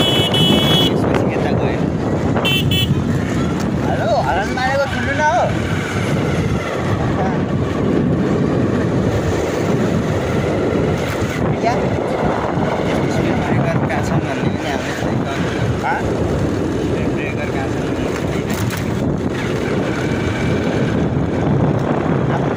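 Wind buffeting the microphone of a phone filming from a moving motorcycle, mixed with the steady running of the bike and its tyres on the road. Two brief high-pitched beeps sound in the first three seconds.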